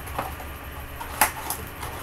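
Cardboard box with a plastic window being handled and turned over: one sharp tap about a second in, then a couple of lighter clicks, over a low steady hum.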